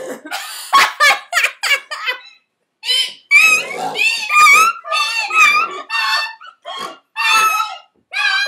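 A woman's hysterical laughter. It starts as breathy, gasping bursts and, after a brief pause about two seconds in, turns into a run of very high-pitched squealing laughs.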